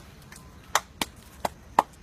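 Hands clapping a quick, uneven beat: four sharp claps in about a second, counting in an a cappella funk verse.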